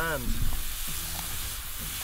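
Wild mushrooms (morels, ceps and chanterelles) sautéing in hot olive oil in a pan, a steady sizzle as they cook down and take colour.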